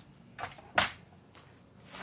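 A few brief, soft clicks and rustles, the strongest a little under a second in, from handling small crimp connectors in a plastic organizer box and picking up a pair of crimping pliers.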